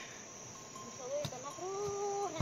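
Steady high-pitched drone of insects. From about a second in, a faint drawn-out pitched call rises and falls over it.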